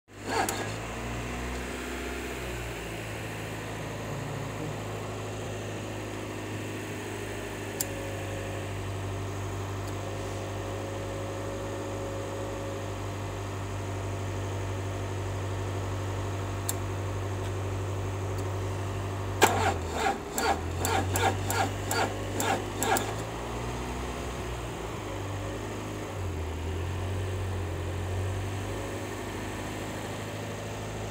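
Car engine idling steadily while a dead battery is being charged through jumper cables from another car. Its speed dips and recovers a couple of times in the second half, and a quick run of about a dozen sharp clicks or knocks comes around two-thirds of the way through.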